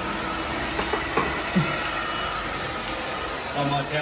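Handheld hair dryer blowing steadily while hair is brush-dried.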